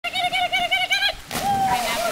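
A quick run of about seven short, high-pitched squeaks or yips, then a sudden splash just past a second in as a dog launches off a dock and hits the pool water.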